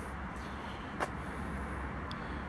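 Steady low outdoor background rumble, with one short click about a second in.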